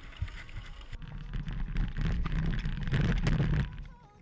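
Mountain bike riding down a dirt downhill trail, picked up by an action camera on the bike. About a second in, a loud rumble of wind on the microphone and tyres on the dirt starts, with rapid knocks and rattles from the bike over the rough ground. It drops away near the end.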